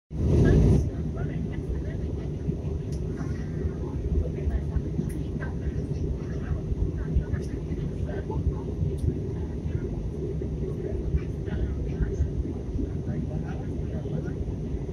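Steady low roar of airliner cabin noise, engines and airflow heard from inside the cabin during descent, with a louder burst in the first moment. Faint passenger voices murmur underneath.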